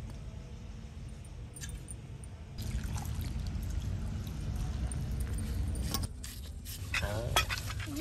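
A hand squishing and slapping wet atta dough in a steel bowl as water is worked into the flour, starting about two and a half seconds in, over a low steady rumble. A voice is heard near the end.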